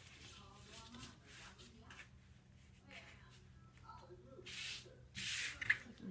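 Crisp organza fabric rustling as it is folded and smoothed on a cutting table, with two louder swishes near the end.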